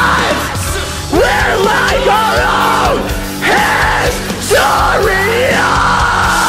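A man screaming harsh metalcore vocals in several long held phrases over a loud metal backing track.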